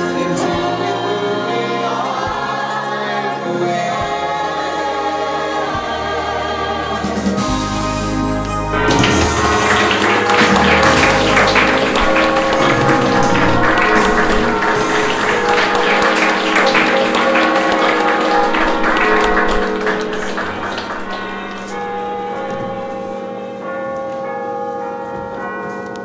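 Stage-musical cast singing together over keyboard accompaniment until about a third of the way in, when audience applause breaks out and runs for about ten seconds over the accompaniment. The applause then dies away, leaving quieter instrumental music.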